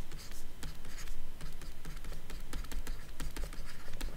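Stylus writing on a tablet: irregular quick taps and short scratches as letters are drawn, over a low steady hum.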